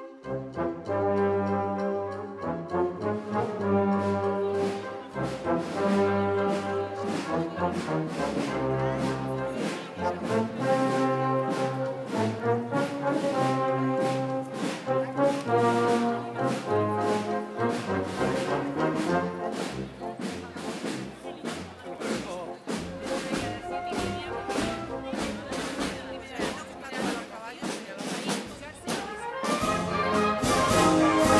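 Brass band playing, trombones and trumpets carrying the tune over a steady beat.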